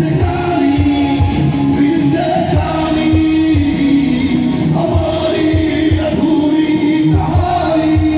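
A male singer singing a Hindi song live into a handheld microphone, amplified over loud backing music with a steady drum beat.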